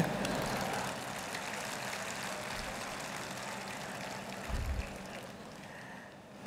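Steady background noise of a large hall picked up through a public-address microphone, with a faint steady hum, slowly fading, and a brief low thump about four and a half seconds in.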